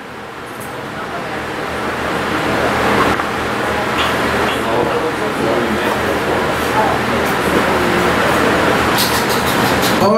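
Many voices talking at once, a murmur that grows louder over the first few seconds and then holds steady.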